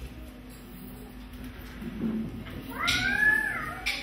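A quiet lull with a steady low hum, then, about three seconds in, a single high note from the live band that slides up and back down, lasting about a second.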